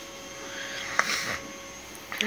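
A single sharp click about a second in, followed by a brief rustle, over a steady low hiss.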